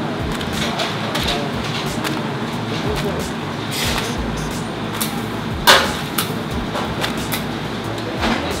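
Busy restaurant kitchen noise: indistinct background voices and the clatter of cooks working, with one sharp knock nearly six seconds in.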